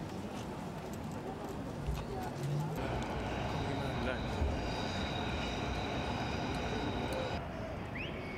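Outdoor city street ambience: indistinct voices of people around, over a low traffic rumble. The background changes abruptly about three seconds in, when a faint steady high whine joins it, and again near the end.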